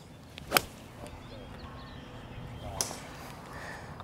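A golf club strikes a ball off the turf: one sharp, crisp crack about half a second in, on a full approach swing.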